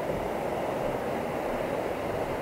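Steady rushing of a shallow, fast-flowing river running over rocks below a footbridge.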